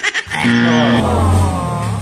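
A comic wrong-answer sound effect: one long, drawn-out sound starting about a quarter second in, right after the answer is called wrong.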